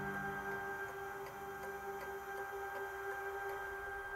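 Soft ambient background music, its long held tones slowly fading, with a faint even ticking about two or three times a second.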